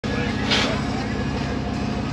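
Jeep Wrangler LJ engine, a Hemi V8 swap, running steadily as the Jeep sits on a flex ramp, with a short hiss about half a second in.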